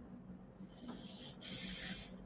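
Faint room tone, then a short, sharp hiss from a woman's mouth lasting about half a second, starting about one and a half seconds in.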